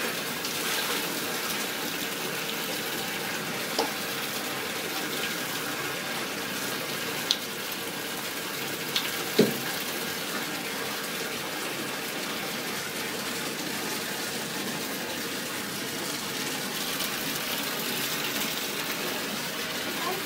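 Water running steadily from a bathtub tap, with a few brief knocks about a quarter and halfway through.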